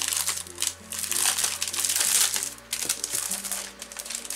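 Clear plastic cellophane sleeve crinkling and rustling in irregular bursts as a pad of scrapbook paper is pulled out of it, over background music.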